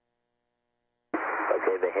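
Near silence with a faint steady hum, then about a second in a man starts speaking in a thin, narrow-band, radio-like voice.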